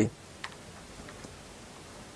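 Quiet room tone with a sharp faint click about half a second in and a couple of softer ticks after it.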